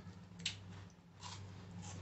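Chewing of a crunchy chocolate biscuit snack: a sharp crunch about half a second in, then two softer crunches, over a low steady hum.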